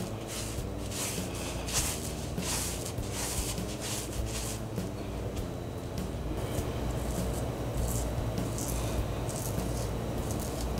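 Shaving brush rubbing lather over a scalp in quick, repeated strokes.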